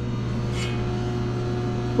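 Steady mechanical hum of running shop equipment, holding a constant low tone with no change in level.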